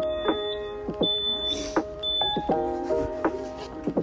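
Background music: sustained pitched notes changing in a steady rhythm, with a thin high note that comes and goes.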